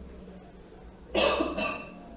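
A person's cough, two quick bursts about a second in, loud against a quiet room.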